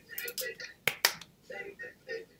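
A few sharp hand claps among voices, the two loudest close together about a second in.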